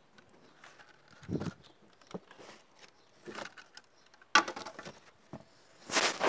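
Handling noise from a phone held in the hand: scattered rubs and knocks on the microphone, with a low thud about a second and a half in and a louder scrape about four and a half seconds in.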